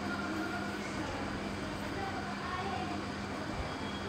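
A steady low hum over an even background noise, with faint wavering voice-like sounds in the background.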